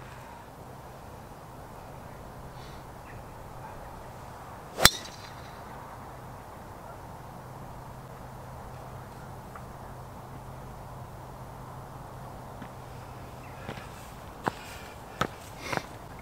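A single sharp crack of a driver striking a golf ball off a tee mat, about five seconds in, over steady low background noise. A few faint clicks follow near the end.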